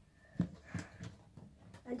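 A large plastic LEGO R2-D2 model being handled and set down on a table: a few short knocks and clatters of its plastic feet and parts against the tabletop.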